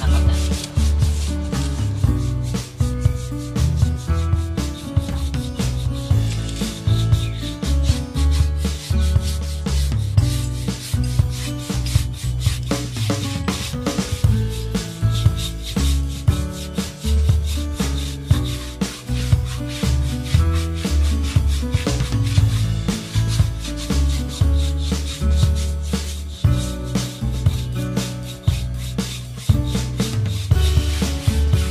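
A shoe brush scrubbing Kiwi shoe polish into a rubber tyre sidewall in rapid, repeated back-and-forth strokes, buffing it to a shine. Background music with a steady bass beat plays under it.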